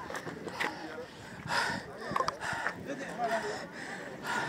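Indistinct voices of people talking nearby, with a few brief rustles and knocks of handling on a phone microphone.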